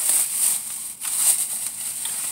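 Rain falling on the roof and windows of a parked car, heard from inside the cabin as a steady hiss.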